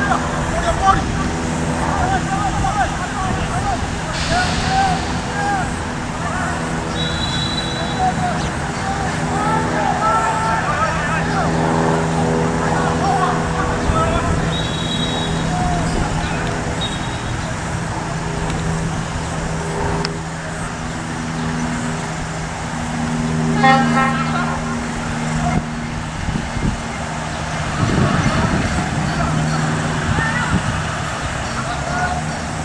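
Distant voices of players calling out across a field, over a steady low hum of road traffic with an engine droning. Brief high chirps come twice, and a short rapid run of ticks near the end.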